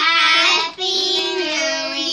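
Young children singing together in held, sung notes, with a short breath about three-quarters of a second in.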